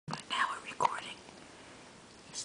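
A person whispering a few soft words, which stop after about a second.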